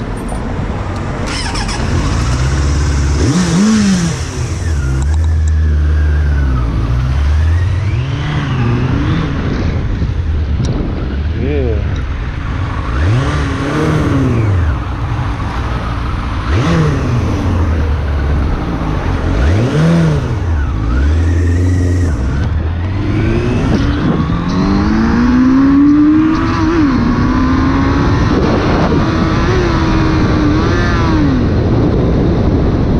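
2001 Suzuki Bandit 600's inline-four engine accelerating and shifting up through the gears: its pitch climbs again and again and drops back at each gear change, with a longer pull near the end.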